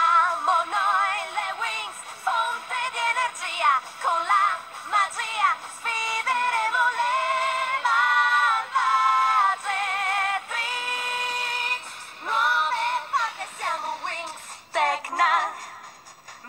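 A cappella singing: several high voices layered in harmony, with wavering held notes and short phrases, without instruments. The sound is thin, with almost no low end.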